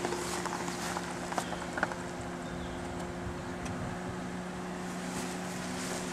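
Quiet outdoor ambience: a steady low hum with a few faint clicks of footsteps on grass.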